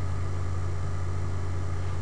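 Steady low hum with a hiss over it, unchanging and with no distinct events.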